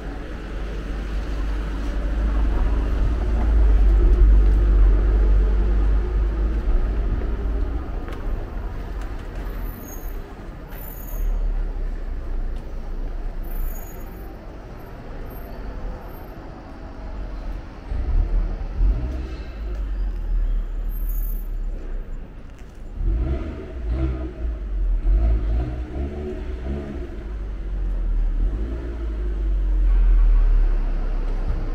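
City street traffic: car engines running close by in a narrow street, with a heavy low rumble that swells and fades.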